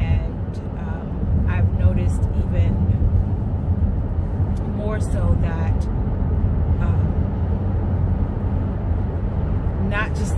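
Steady low rumble of a car heard from inside the cabin, under a woman's talking that comes and goes.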